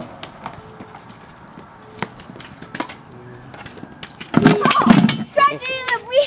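Scattered light clicks and clacks of small wheels on concrete, then a loud burst of voice and a child's voice near the end.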